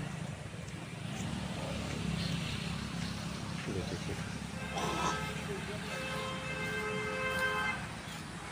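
A steady low hum, with a vehicle horn held for about three seconds a little after the middle.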